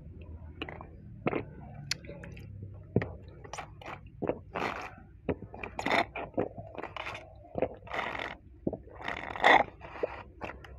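Drinking through a straw from a small drink carton: wet mouth clicks and swallows, with several longer hissy slurps through the straw, the loudest near the end.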